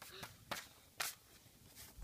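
A few sharp clicks and taps about half a second apart, the loudest about a second in: handling noise from a handheld phone being moved around.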